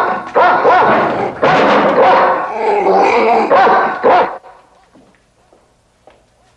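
A dog barking loudly over and over, cutting off suddenly a little past four seconds in.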